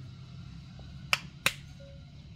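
Two sharp plastic clicks about a third of a second apart, from the spout lid of a red plastic water jug being handled and snapped shut after a drink.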